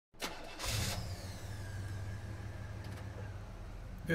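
A car engine starting: a click, a short loud burst as it catches, then a steady idle. A faint high whine slides down and fades over the next couple of seconds.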